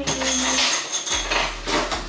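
Kitchen clatter: dishes and utensils knocking together as they are handled, busiest for about the first second and a half.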